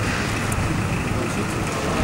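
Steady low rumble of a motor vehicle, with an even background hiss of street noise.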